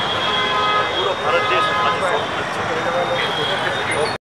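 A man speaking continuously in a loud voice over a steady background of street traffic noise.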